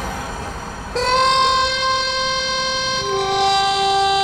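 A long, loud horn-like tone that starts about a second in and steps down to a lower pitch about two seconds later.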